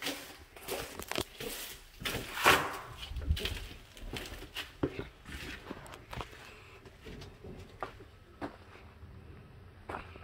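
Footsteps and knocks as a door is opened and someone walks out, the loudest a short whooshing swell about two and a half seconds in. After that comes a low wind rumble on the microphone, with scattered steps and clicks.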